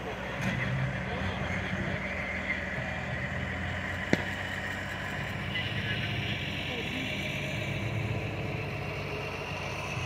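Aircraft tow truck's engine running steadily as it pulls an F-35A fighter along the apron, with a single sharp click about four seconds in.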